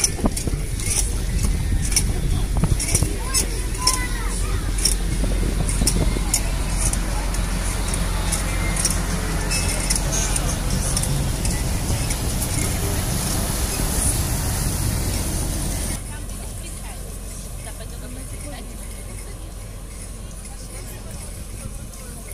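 Small tour motor ship's diesel engine running steadily as it pulls away, with propeller wash churning the water. About two-thirds of the way through the sound drops to a quieter, more distant engine hum.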